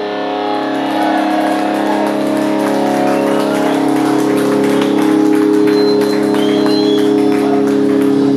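Electric guitars and bass holding loud, steady ringing notes with no drums, the final chord of a punk rock song left to sustain through the amplifiers.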